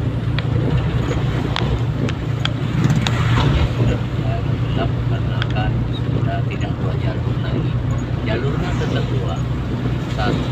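A car driving in the rain, heard from inside the cabin: a steady low engine and road hum, with raindrops ticking irregularly on the windshield.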